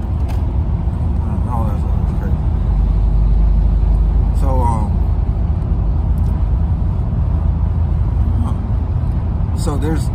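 Car cabin noise while driving: a steady low rumble of road and engine noise, swelling a little about three to four seconds in.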